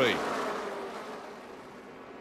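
A pack of NASCAR Xfinity stock cars' V8 engines buzzing from a distance as the field runs through a corner, gradually fading away.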